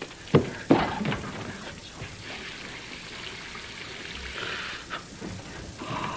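Two sharp knocks, then a tap running for about two and a half seconds as a washcloth is wetted with cold water.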